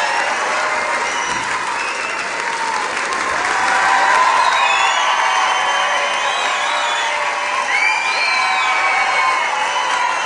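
A large theatre audience applauding and cheering steadily, with calls and whoops rising and falling over the clapping.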